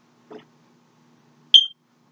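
A single short, high-pitched chirp or beep about one and a half seconds in, starting suddenly and fading within a fraction of a second, over a faint steady hum.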